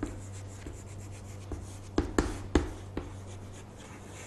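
Chalk writing on a chalkboard: faint scratching with sharp taps as the chalk strikes the board, three close together about two seconds in, over a steady low hum.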